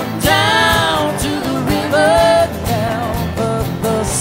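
Live worship band playing an instrumental passage between chorus and verse: strummed acoustic guitars, drums and keyboard, with a wavering melodic line over them.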